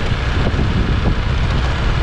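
Wind buffeting the microphone on a moving motor scooter, a loud, steady rumble with the scooter's riding noise beneath it. It cuts off suddenly at the end.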